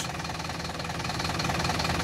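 Mercedes-Benz Vario 814D mini coach's four-cylinder diesel engine idling steadily, growing slightly louder over the two seconds.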